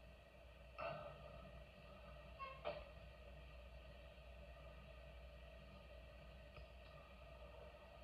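Near silence: a faint steady background hum, broken by two brief faint sounds, one about a second in and one near three seconds in.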